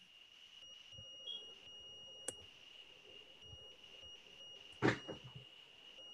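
Faint, steady high-pitched whining tone on the video-call audio, with a fainter, higher tone cutting in and out over it. A single sharp click a little over two seconds in.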